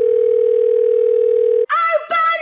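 Telephone ringback tone heard over the line: one steady ring about two seconds long, the sound of a call ringing at the other end. It cuts off abruptly near the end, and a small child's high-pitched voice starts.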